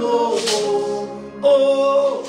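A man singing a gospel hymn slowly, holding long notes, with a new, louder note coming in about a second and a half in.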